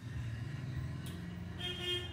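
Steady low rumble of road traffic, with a short vehicle horn toot near the end.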